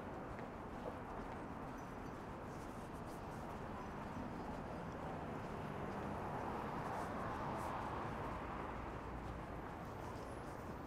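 City street ambience on a sidewalk: a steady hum of road traffic that swells a little past the middle as a vehicle goes by, with the light tap of the walker's own footsteps.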